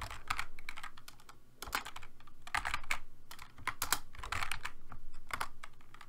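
Typing on a computer keyboard: irregular key clicks in quick runs with short pauses between them.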